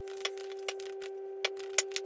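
Oracle cards being shuffled and handled: a string of irregular light card clicks and snaps over a steady low humming tone.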